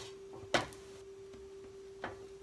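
A spatula knocks once against a nonstick skillet about half a second in, a short sharp click as the pancake is turned and checked. A steady low hum runs underneath.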